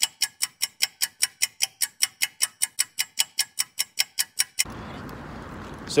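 Ticking clock sound effect: a fast, even run of sharp, high ticks, about five a second, that stops suddenly about four and a half seconds in. A faint steady hiss follows.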